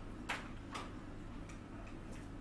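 Marker pen strokes on a whiteboard: two short, sharp strokes about half a second apart, then a couple of fainter ticks, over a steady low room hum.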